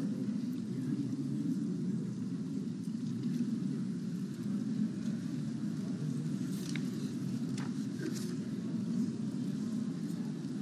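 Steady low room noise of a large parliament chamber, a dull hum with no clear voices. A few faint clicks come in the second half.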